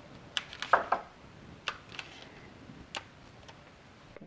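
Kapton tape being pulled and pressed around two cylindrical 18650 cells: a few light clicks and ticks, with a short crinkling cluster about a second in.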